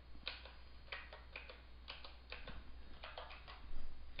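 Keys being pressed one after another, a faint string of short irregular clicks about three a second, as a division is keyed into a calculator.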